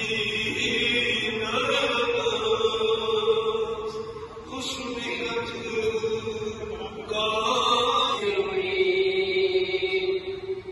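A man's voice chanting a devotional recitation into a microphone, in long held notes that move to a new pitch every few seconds.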